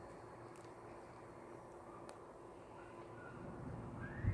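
Faint outdoor background noise with a steady low hum, growing slightly louder near the end.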